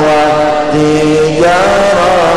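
A man chanting an Arabic devotional syair (Islamic praise poem) in long held notes, stepping to a new note about two-thirds of a second in and sliding up near the end.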